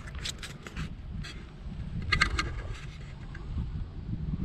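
Low wind rumble on the microphone, with a few short scrapes in the first second and a brief squeak about two seconds in.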